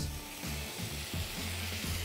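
Seared sirloin strips and their juices tipped back into a hot frying pan of peppers and onions, sizzling steadily, under background music with a low, stepping bass line.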